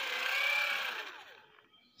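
Geared DC motor from a children's ride-on toy, hand-cranked as a generator: its gear train whirs with a whine whose pitch wavers with the cranking speed. It winds down and stops about a second and a half in, as the cranking ends.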